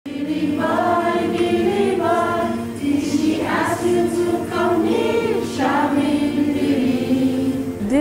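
A group of women singing a song together, with held notes in short phrases.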